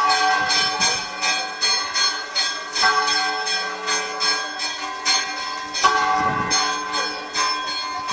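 Church bells ringing a dobre, the traditional Minas Gerais bell toll: quick repeated strokes, several a second, over the bells' continuing ring.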